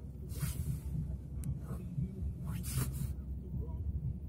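Car windshield wipers, a little frozen, swishing across wet glass twice, about two seconds apart, over a steady low rumble from the moving car.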